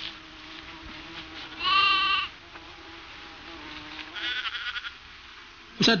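A short, high-pitched animal call comes about two seconds in, and a fainter one follows a couple of seconds later. Under them run a steady low hum and an insect-like hiss.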